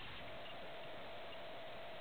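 Steady hiss of an airband VHF radio receiver between transmissions, with no voice on the frequency. A faint steady tone sits in the hiss from just after the start.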